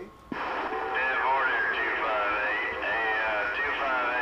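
CB radio base station speaker: a click as the receiver opens, then static with warbling, garbled distant voices coming in over skip.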